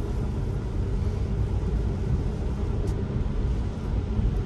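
Road noise inside an electric Tesla's cabin while driving on a rain-soaked road: a steady low rumble with an even hiss of tyres on wet pavement.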